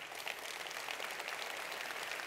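Large audience applauding: many hands clapping in a dense, steady patter that builds in just after the talk ends.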